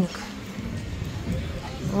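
Outdoor background of a busy boardwalk: a low steady rumble with faint distant voices. A woman's voice begins right at the end.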